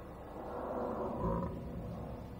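A rough, growl-like vocal noise, like a roar made with the voice, swelling from about half a second in and easing off a little past the middle.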